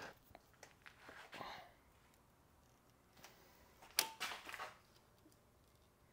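Quiet handling of a threading die handle and a torpedo level at a bench vise: a few light clicks and a short scrape in the first two seconds, then one sharp clack about four seconds in, followed by a brief rustle, as the level is set on the die handle to check that the first threads start straight.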